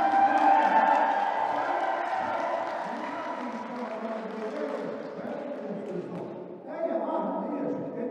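A man speaking into a handheld microphone over a hall PA. For the first six or so seconds his voice is mixed with audience cheering and applause, loudest near the start; then the crowd noise drops away and only his voice carries on.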